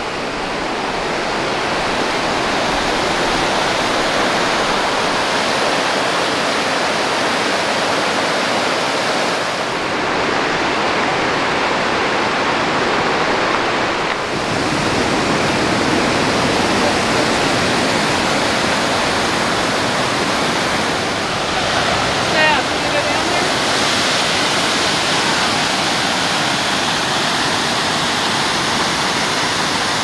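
Loud, steady rushing of a fast mountain river's whitewater, fading in over the first couple of seconds and then holding even.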